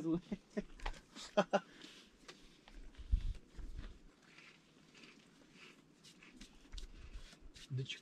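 Faint background talking with scattered small clicks, and a brief low rumble about three seconds in; no gunshot.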